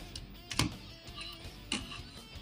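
Two short plastic clicks from a hand-held Transformers toy car figure being turned over and set down, one about half a second in and one near the end, over faint background music.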